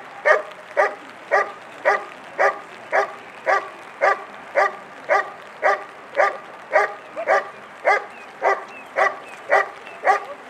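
German shepherd barking steadily and rhythmically, about two barks a second, at a decoy in a blind: the hold-and-bark exercise of IGP protection work.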